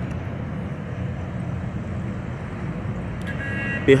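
Steady low hum of city traffic heard from high above, with a short high-pitched tone near the end.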